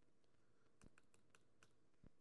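Near silence broken by a handful of faint computer-key clicks in a little under a second, as keys are pressed to move to the next slide.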